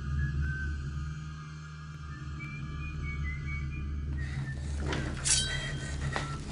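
Dark, low droning thriller film score with faint high held notes. About four seconds in a hiss swells, and a sharp hit lands about a second later.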